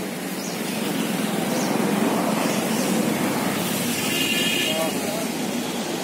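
Indistinct chatter of people over steady street traffic noise, with a brief high-pitched tone about four seconds in.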